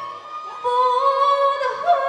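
Manipuri classical dance music with a singing voice holding long, steady notes. The music dips briefly near the start, then a new held note comes in about half a second in and steps up in pitch twice.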